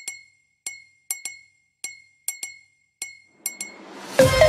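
Gap between songs on a music soundtrack: about a dozen short glassy chime strikes on one high note, unevenly spaced, then a rising swell near the end as the next track comes in.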